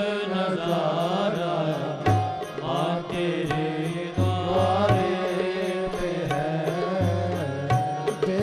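Hindu devotional aarti singing: a voice sings a melodic line with sliding ornaments over a steady held accompaniment. Drum strokes come in short groups about two, four and seven seconds in.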